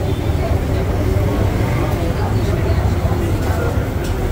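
Indistinct chatter of people talking over a steady low rumble.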